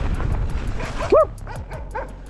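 A dog barks once, a short rising-and-falling bark about a second in, over the rumble of wind and tyres. A fast, even ticking, the freewheel hub of a coasting mountain bike, runs through the first part and then stops.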